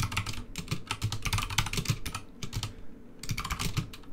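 Fast typing on a computer keyboard: a rapid run of key clicks for about two seconds, a pause of about a second, then another run of clicks near the end.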